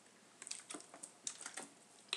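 Faint computer keyboard typing: a run of light, irregular key clicks starting about half a second in.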